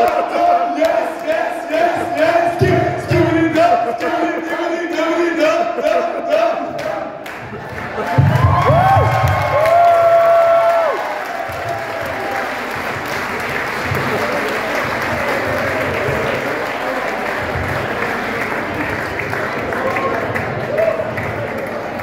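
Dance music with a steady beat and a sung line, then a loud drawn-out cheer about eight seconds in, followed by sustained crowd applause and cheering over the continuing bass beat.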